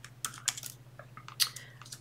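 Computer keyboard being typed on: an irregular run of keystroke clicks, with louder strokes near the start and about a second and a half in.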